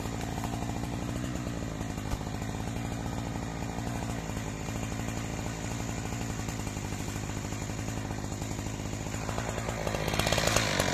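Husqvarna 372XP two-stroke chainsaw idling steadily, with a single knock about two seconds in. It starts to rev at the very end.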